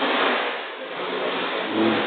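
Nine-pin bowling balls rolling on the lanes and through the ball return, a steady rumble that swells briefly near the end.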